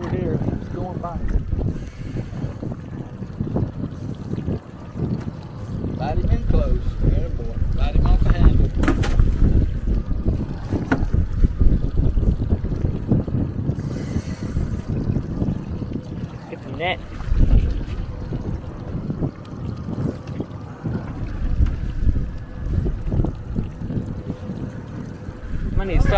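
Wind noise on the microphone over water slapping against a small boat's hull, with brief faint voices now and then.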